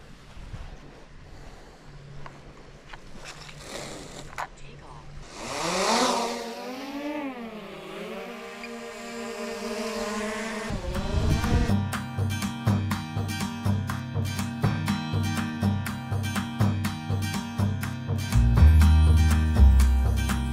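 A small quadcopter drone's propellers spinning up about five seconds in, a whine that rises and then wavers in pitch for about six seconds as it lifts off. Steady background music with plucked guitar takes over from about halfway.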